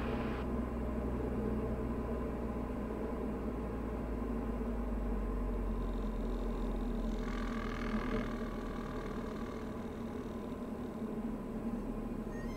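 Diamond DA40's engine and propeller droning steadily at low power as heard inside the cockpit on short final, with a slight change in the sound about seven seconds in.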